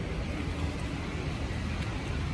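A steady low rumble of outdoor background noise with no distinct events.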